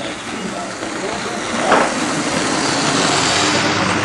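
Lima model Class 37 locomotive and its coaches running past: a whirring, rumbling motor and wheels on the track, growing louder as the train nears, with a short louder burst about halfway through. A radio talks in the background.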